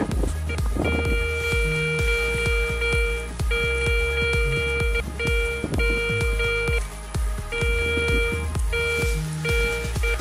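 Garrett Ace 250 metal detector with a NEL Tornado search coil beeping as a silver 25-kopeck coin is passed over the coil: one steady mid-pitched tone, sounding six times for half a second to over two seconds each. The detector is picking up the coin at 25 cm.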